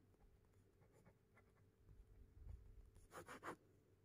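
Near silence, with a few faint scratches and rustles of a pen on notebook paper in the second half.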